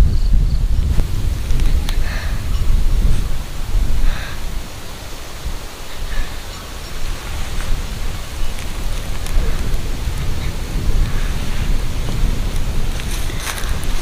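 Wind buffeting the microphone outdoors: a loud, gusty low rumble under a steady hiss, with a few faint rustles and clicks near the end.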